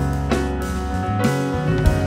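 Keyboard, bass and drums trio playing: sustained keyboard chords over a bass line, with sharp drum hits at the start, about a second in and again near the end.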